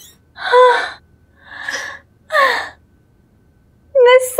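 A woman's three short, breathy, high-pitched gasps of excitement, the last one sliding down in pitch.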